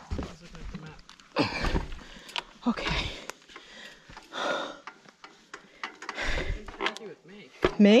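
A person breathing hard in several loud, separate breaths, with low rumbling bumps on the microphone.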